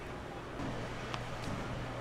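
Bowling alley room sound: a steady low rumble that swells slightly about half a second in, with one short sharp click just after a second.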